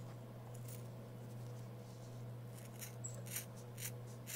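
Scissors cutting through a nylon dog collar strap: a few short crisp snips about half a second apart, starting a little past halfway, over a steady low hum.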